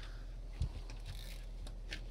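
A few soft low knocks, the loudest about half a second in, and faint ticks over a steady low hum: handling noise from a bent fishing rod and reel under load from a hooked sturgeon.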